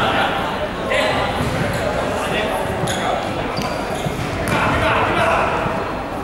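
Players and spectators talking in a large sports hall, with a basketball bouncing on the hardwood court.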